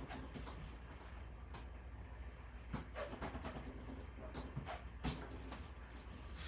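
Faint handling noises: soft rubs and light clicks as rubber stamps on clear acrylic blocks are cleaned on a chamois, over a low steady hum.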